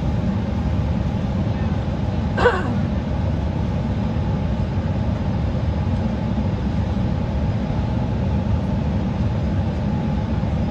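Steady low rumble of airliner cabin noise. A single short vocal sound cuts in about two and a half seconds in.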